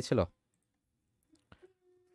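A few faint computer keyboard keystrokes during a short pause in the talk, with one sharper key click about one and a half seconds in.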